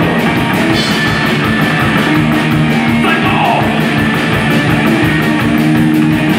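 A live rock trio playing an instrumental passage: electric guitar, upright double bass and a drum kit keeping a fast, steady beat.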